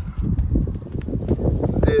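Loud, irregular low rumble of buffeting on the microphone, with no clear pitch.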